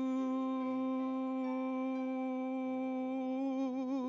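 A man's voice holding one long sung note through a microphone, near the end of a gospel solo, with vibrato coming in near the end.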